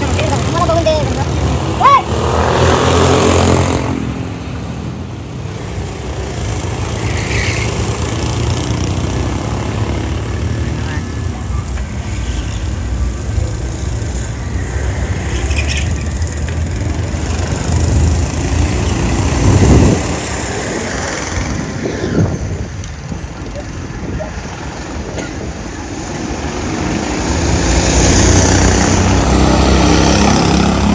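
Small go-kart engines running as karts lap the track, the sound swelling as a kart passes close: loudest a few seconds in, again around twenty seconds in, and near the end.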